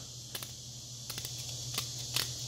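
Tip of a pocket knife picking and scraping at a small painted steel pipe plug, giving a few faint, sharp little clicks and scrapes as it chips paint off in search of a painted-over breather hole.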